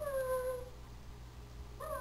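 A woman's voice drawing out a long, high-pitched, sing-song "come" to call a cat, gliding slowly down in pitch, followed by a quiet pause before the next call begins near the end.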